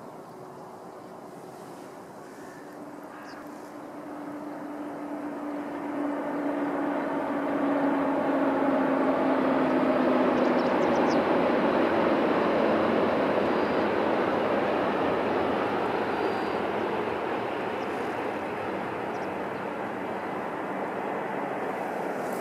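A Tohoku Shinkansen high-speed train passing at speed over a viaduct some distance off: a rushing roar that swells over several seconds, peaks about halfway through and fades slowly, with a faint low tone sinking slightly in pitch as it approaches.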